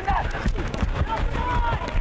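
Rugby league players shouting short calls across the field, with distant voices heard late on, over the dull thuds of running feet and contact on grass.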